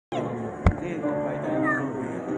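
Violin playing slow notes that slide in pitch, with one sharp knock less than a second in.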